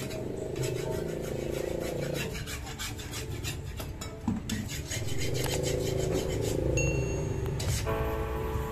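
Rhythmic rasping scrapes of a hoe and a trowel working wet cement mortar, in two quick runs with a lull midway, over faint background music.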